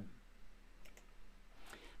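Faint clicks at a computer, about a second in and again near the end, over quiet room tone with a low hum.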